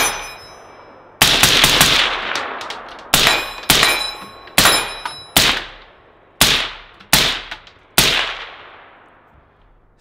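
An AR-style semi-automatic gun firing: a quick string of several shots about a second in, then seven single shots spaced roughly a second apart. Each sharp crack trails off in a ringing echo.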